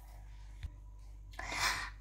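Mostly quiet room tone in a small room, with a single faint click of a utensil against a plastic mixing bowl about two-thirds of a second in, and a short soft rush of noise near the end.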